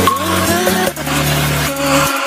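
Loud electronic dance music over steady bass, with synth pitches that slide up and down; the sliding sounds are close to an engine revving.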